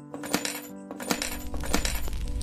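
Bright metallic tinkling clinks, about six in two seconds, each ringing briefly, over soft sustained music tones; a low rumble comes in about halfway through. This is the sound-effect and music bed at the opening of an animated short.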